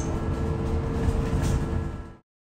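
London bus's interior running noise: a steady low rumble with a steady hum above it.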